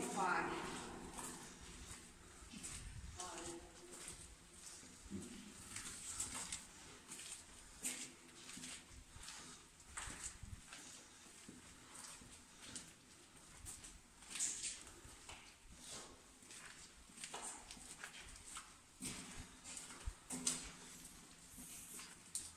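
Footsteps walking along the tunnel floor, an irregular run of light steps, with faint voices at times.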